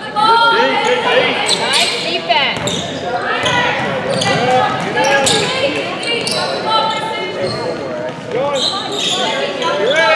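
Basketball game on a hardwood gym floor: the ball bouncing with sharp knocks, under voices calling out, all echoing in the large hall.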